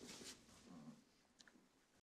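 Near silence: faint, indistinct film-soundtrack sound fading out within the first second, with a tiny click about halfway through.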